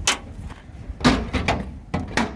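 Aluminium compartment door on a steel truck body being swung and shut: a few sharp knocks and clunks, about half a second to a second apart.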